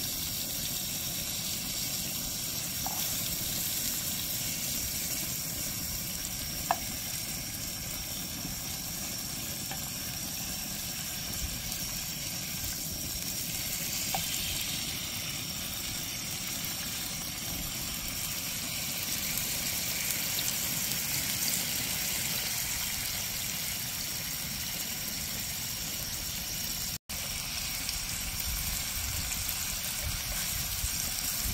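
Pork belly slices sizzling steadily in a frying pan over a gas burner, with a few light clicks from metal tongs turning the meat.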